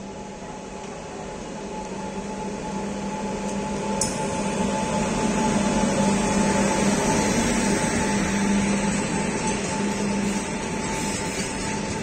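Electric freight locomotive passing close by: a steady hum with a few held tones, growing louder as it approaches and loudest as the locomotive goes past about six seconds in, then the wagons rumbling along behind. There is one sharp click about four seconds in.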